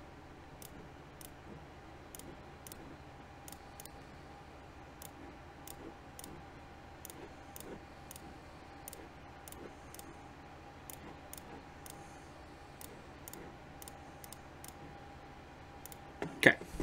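Computer mouse clicking, faint and irregular, a click or two every second, over a faint steady hum.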